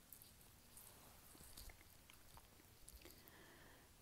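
Near silence: faint room tone with a few scattered small clicks.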